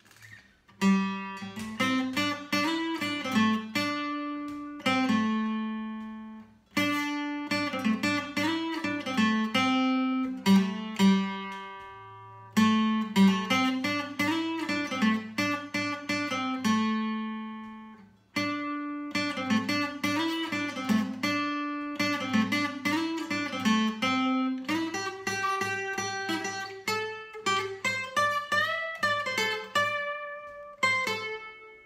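Seagull S6 Plus steel-string acoustic guitar (solid spruce top, cherrywood back and sides) fingerpicked: a melody over bass notes, played in phrases that ring out and fade before the next one starts, about every six seconds.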